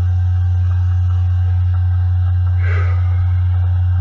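Background music: a deep bass note held steady and unbroken.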